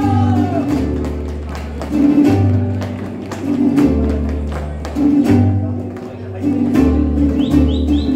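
Mariachi instrumental passage: a guitarrón plays deep bass notes that change about once a second under strummed vihuela and guitar chords, after a sung phrase fades out just as it begins. Near the end a high, wavering whistle glides up and down over the music.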